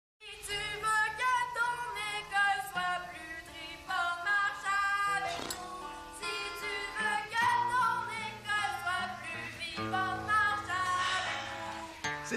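A song: a singing voice carrying a melody of held, gliding notes over sustained instrumental accompaniment.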